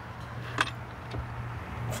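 Quiet truck cabin with a steady low hum and a faint click about half a second in.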